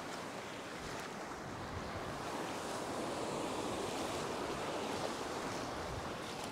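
Small surf waves breaking and washing up a sandy beach: a steady wash that swells a little in the middle and eases off again.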